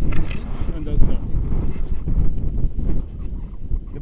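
Wind buffeting an action-camera microphone: a loud, uneven low rumble, with brief snatches of voices in the first second.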